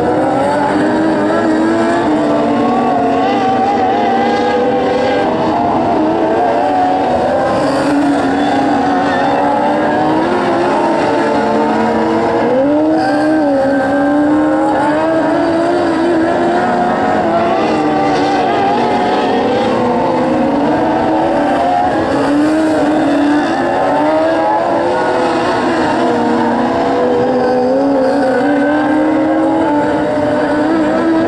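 A field of dwarf race cars with motorcycle engines racing on a dirt oval. Several engines run at once, each rising and falling in pitch as the cars lap.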